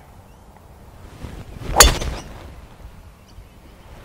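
Golf driver swung at a teed ball: a short whoosh of the downswing, then one sharp crack as the clubhead strikes the ball about two seconds in, fading away over the following second.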